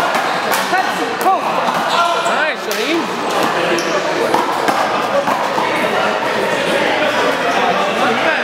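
A handball rally: a series of sharp smacks as the rubber ball is struck by hand and rebounds off the wall and floor, over continual overlapping chatter of players and onlookers.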